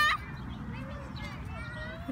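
A child's high-pitched shout that cuts off just after the start, then a fainter drawn-out child's call near the end, over a low rumble.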